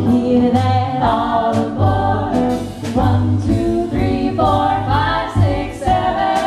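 Three women singing in close harmony, with sustained, gliding notes, backed by a small live band with guitar and drums keeping a steady beat.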